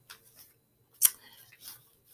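Handling noise: one sharp click about a second in, with faint rustling and small ticks around it.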